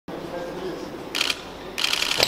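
Two short bursts of fast rattling clicks, one about a second in and another near the end, over a steady low hall background.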